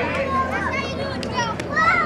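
Children's voices calling out and chattering in overlapping, high-pitched shouts, with a short sharp knock about one and a half seconds in.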